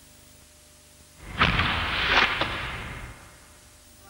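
Faint tape hiss, then a whooshing rush of noise that starts about a second in, carries a few sharp cracks and fades away over about two seconds.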